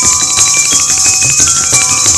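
Jaltarang, a row of water-tuned porcelain bowls struck with thin sticks, playing a quick run of short ringing notes at changing pitches. Under it runs a steady high jingling shimmer of kathak ankle bells (ghungroo).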